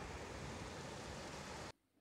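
Faint, steady wash of sea surf breaking on a sandy beach, which cuts off suddenly near the end.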